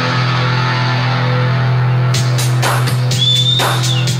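Live board-mix recording of a rock band led by electric guitar: a sustained low guitar chord rings on, drums come in about halfway with a steady beat, and a high held note bends slightly near the end.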